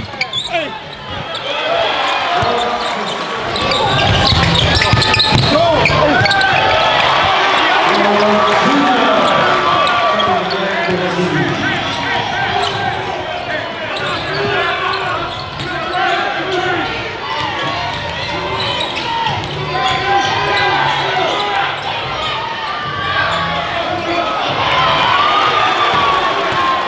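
Live sound of a basketball game in an arena: a crowd's many overlapping voices and shouts, with a basketball bouncing on the hardwood court as players dribble.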